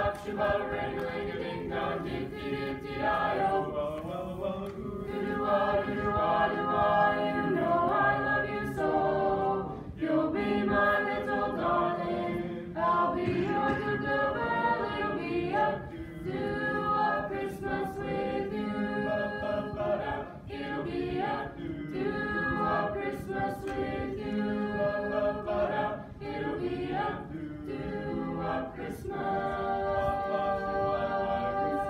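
A mixed-voice high school choir singing in parts, with phrases separated by short breaks.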